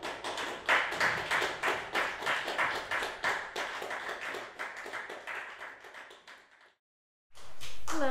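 Applause from a small group, the separate hand claps distinct, fading away over about six seconds and cut off about seven seconds in.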